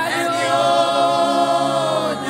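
Women singing a gospel worship song into microphones: a note swoops up at the start and is held long and steady, easing down near the end.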